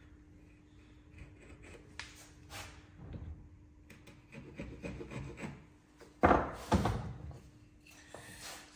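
A bevel-edge chisel pushed by hand, paring wood in soft scraping strokes. A little after six seconds in come two loud wooden knocks.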